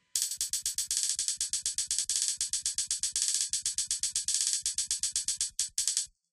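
Drum sample from Maschine triggered in a rapid roll, about ten hits a second. Each hit is bright and high with a soft low thump under it. The roll cuts off suddenly near the end.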